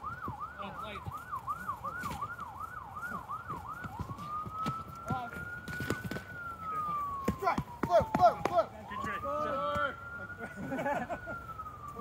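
Emergency vehicle siren sounding in yelp mode, sweeping up and down about three times a second, then switching about four seconds in to a slow wail that rises and falls twice. Scattered sharp knocks from foam weapons and a few shouts sound over it.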